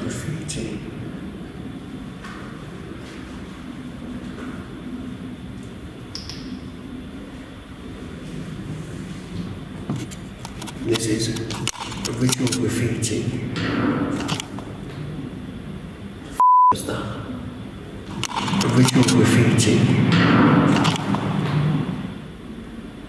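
Low voices talking, with a short, single-pitched censor bleep replacing a word about three-quarters of the way through, the rest of the sound cut out beneath it.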